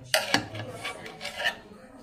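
Steel screwdriver clicking and scraping on a screw and the sheet-metal chassis inside a microwave oven as a hold-down screw is turned, with two sharp clicks near the start.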